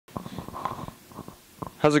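Handling noise from a handheld microphone: a quick run of soft clicks and rustles through the first second, a few fainter ones after. A man's voice starts speaking near the end.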